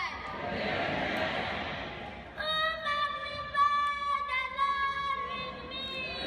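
Crowd noise in a large hall for about two seconds, then high-pitched voices chanting or singing in a reverberant room with long held notes.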